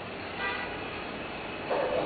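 A brief horn toot about half a second in, over steady background noise.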